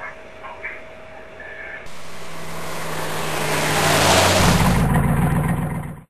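A motor vehicle starts up suddenly about two seconds in, as a rushing noise over a low engine hum that grows steadily louder, then cuts off abruptly at the end.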